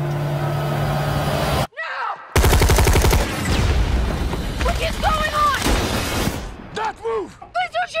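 A steady music drone cuts off suddenly to a brief silence. About two and a half seconds in, a loud burst of rapid automatic gunfire breaks out, followed by a noisy stretch. Near the end come shouting, voice-like sounds.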